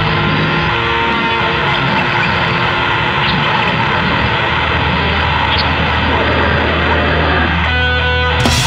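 Grindcore music: a dense, loud wall of heavily distorted guitar noise. Near the end it thins out to a few held, ringing tones.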